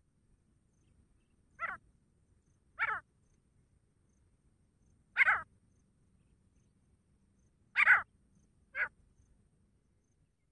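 Grey francolin calling: five short calls at uneven intervals, the loudest about five and eight seconds in.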